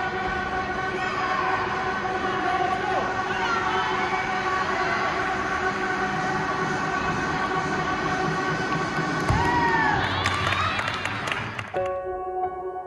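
Busy gymnastics hall: crowd chatter over steady background music. About nine seconds in comes a single thud as the uneven-bars dismount lands on the mat, followed by cheering and whistles. A different piece of music cuts in just before the end.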